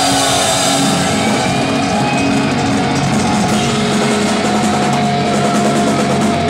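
Live heavy metal band playing loud: electric guitar holding long, bending notes over a full drum kit.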